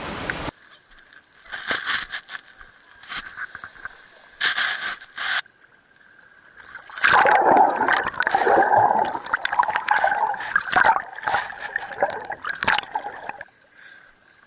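Seawater splashing and sloshing around a camera dipped in and out of the sea. In the second half it turns into a long stretch of loud underwater bubbling and gurgling.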